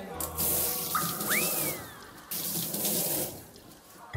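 Water running from a tap in two spells, the first about two seconds long and the second shorter, with a brief high tone that rises and falls about a second in.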